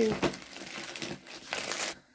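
Plastic courier mailer bag crinkling and rustling as a cardboard box is pulled out of it, louder near the end and cutting off suddenly.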